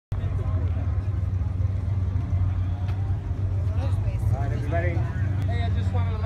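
A steady low engine rumble, like a car engine idling, with a man's voice talking over it from about four seconds in.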